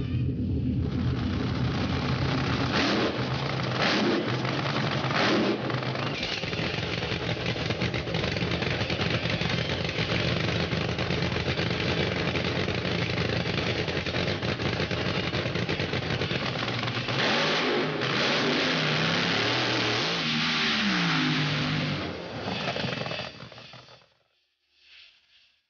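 Funny Car drag racer's engine running loud and unmuffled, with a few sharp cracks in the first few seconds and the revs swinging up and down near the end. The engine cuts off suddenly just before the end.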